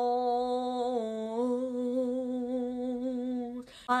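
A single voice holding one long wordless note, steady in pitch apart from a small dip about a second in, breaking off shortly before the end.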